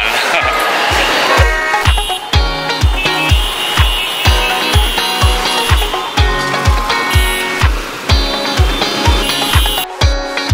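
Upbeat background music with a steady kick-drum beat, about two beats a second.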